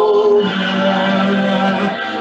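A choir singing a slow hymn; the pitch shifts about half a second in and the new note is held for over a second.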